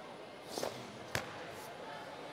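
Karate kata technique: a brief rustling swish of the karate uniform about half a second in, then one sharp crack from a fast strike or stance change a little past one second in.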